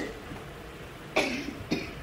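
A woman coughing twice, about half a second apart, a little over a second in. She puts it down to not having spoken for a long while.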